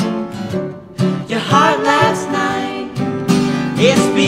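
Music: an acoustic guitar being strummed along with piano and sung vocal harmony, mid-song.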